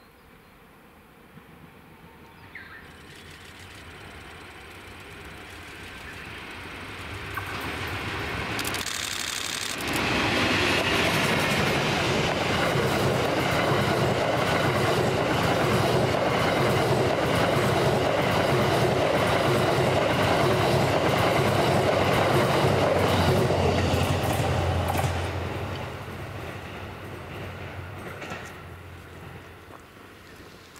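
An EF81 electric locomotive hauling a rake of E26-series sleeper coaches passes at speed. The sound builds as the train approaches and jumps suddenly louder about a third of the way in as the locomotive draws level. For about fifteen seconds the coaches roll by with a steady low hum and quick wheel clicks on the rails, then the sound fades as the train moves away.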